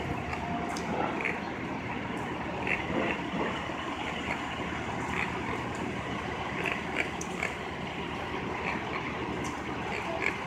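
Steady city-street noise of idling vehicles and traffic, with scattered faint clicks and knocks.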